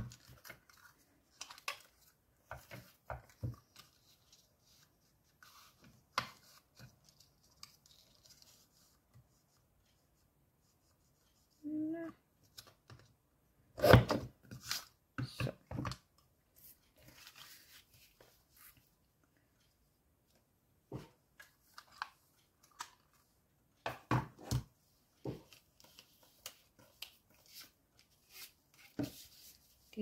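Paper-crafting handling sounds: a handheld banner punch clacking through a strip of cardstock, with cardstock being shuffled and set down on a craft mat. These come as scattered clicks and taps with quiet gaps between them, the loudest cluster about halfway through.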